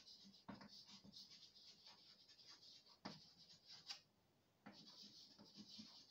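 Chalk writing on a blackboard: faint scratching strokes and small taps as words are written, with a short pause about four seconds in.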